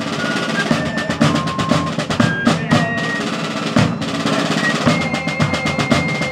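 Fife and drum corps playing a march: fifes piping a high melody of short notes over snare drum rolls and bass drum beats, with one long held fife note near the end.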